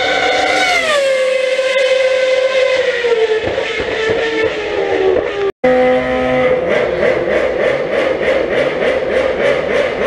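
Race car engine at high revs, its pitch dropping about a second in as it goes past, then sinking slowly. After a sudden break midway, a steady engine note runs on with a pulsing about four times a second.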